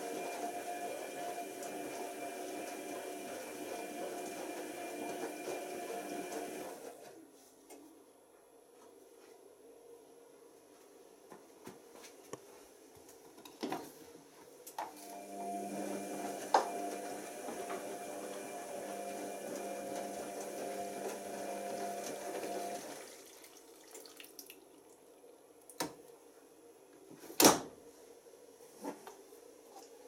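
Tricity Bendix AW1053 washing machine tumbling a wash load: the drum motor hums for about seven seconds, stops for about eight, then runs again for about eight, with water sloshing in the drum. A single sharp knock comes a couple of seconds before the end.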